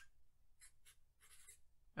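A few brief, faint strokes of a felt-tip Sharpie marker writing on paper.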